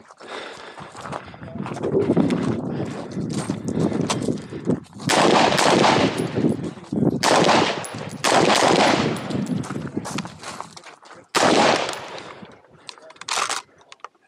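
Semi-automatic rifle fire at close range, coming in several quick strings of shots over the second half, with one short string near the end.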